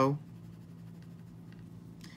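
Pencil on paper: faint scratching strokes as hair is sketched and shaded, over a low steady hum.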